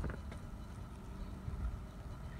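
Wind buffeting the microphone: an uneven low rumble, with a short click right at the start.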